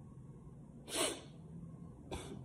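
One short, sharp breath noise from a man, a quick sniff or intake of breath, about a second in, during a pause in his talk.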